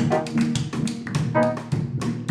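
A jazz band playing live: drum kit, upright bass and piano with saxophones, moving in quick, crisp, evenly paced notes and strokes.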